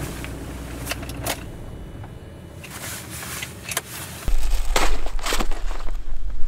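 Car interior road noise, a steady low hum with a few clicks. About four seconds in it cuts abruptly to loud wind buffeting the microphone outdoors, with several sharp clicks.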